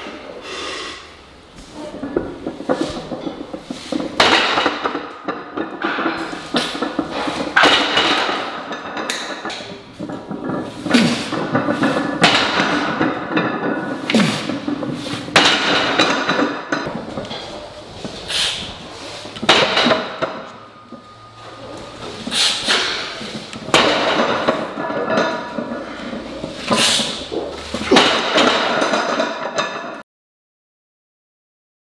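Heavy loaded barbell clanking and thudding again and again as rack pulls are lifted and set back down in a steel power rack.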